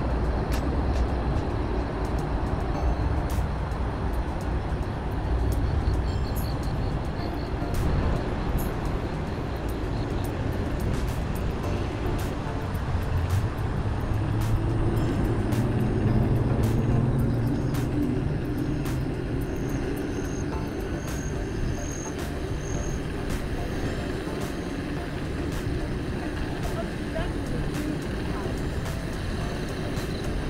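Steady low rumble of wind and rolling noise while riding an Inmotion V5S electric unicycle along a paved path, with scattered light clicks. A pitched hum rises out of the rumble for a few seconds in the middle.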